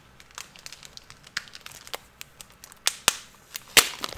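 Plastic comic-book sleeve crinkling and crackling as a comic is handled and opened: irregular small crackles throughout, with a few sharper snaps near the end.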